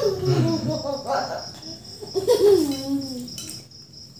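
A young girl's wordless hums, two sing-song glides falling in pitch, one at the start and one about two seconds in, made while she chews. Under them runs a steady, high-pitched pulsing chirp.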